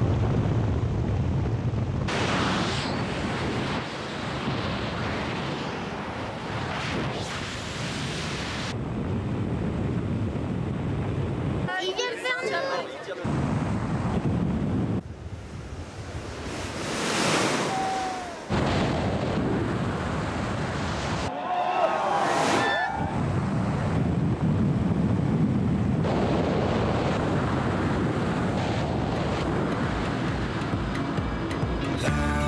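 Wind rushing hard over a helmet camera's microphone during wingsuit flight, cut into several shots. Brief shouted cries come through about twelve seconds in and again about ten seconds later.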